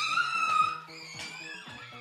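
Background music with a steady, repeating low bass line. Over it, during the first half-second or so, there is a high, drawn-out cry that bends in pitch.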